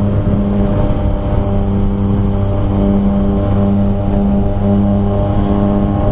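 Yamaha FZ-09 motorcycle's three-cylinder engine running at a steady cruising speed, a constant engine drone with no revving. Wind rush on the camera microphone runs underneath it.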